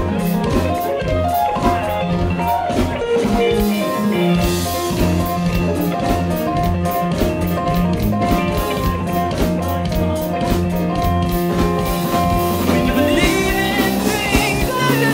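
Live band playing an instrumental groove: drum kit keeping a steady beat under electric guitar and keyboard, with a singing voice coming in near the end.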